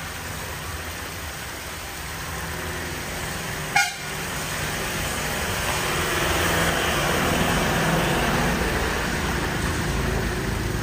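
Road traffic: a steady motor rumble, a short horn toot about four seconds in, and engine noise swelling louder through the second half as a vehicle goes by.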